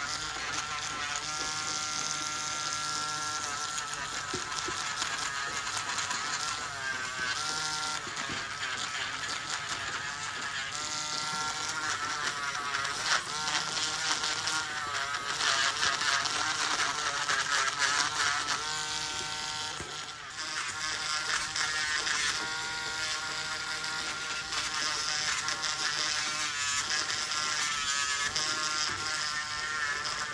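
Podiatry rotary nail drill grinding down toenails with a burr. Its motor whine keeps rising and falling in pitch as the burr is pressed against the nail and eased off.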